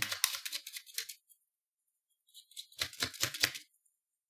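Tarot cards being handled: a run of quick papery clicks and flicks in the first second, then a second cluster of sharp card snaps a little past halfway as a card is drawn from the deck.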